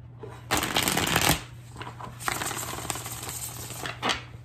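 A deck of tarot cards being shuffled by hand: a loud, dense flurry of card flicks lasting under a second near the start, then a longer, quieter run of shuffling in the second half.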